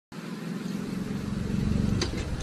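Golf cart driving toward the listener, its motor running steadily and growing louder as it comes closer.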